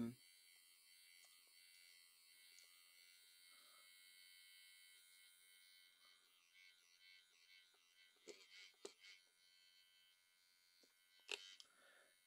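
Faint, steady high whine of a small battery-powered paint mixer spinning in a tin of settled acrylic paint. A few soft clicks come later on as the mixer is worked up and down in the tin.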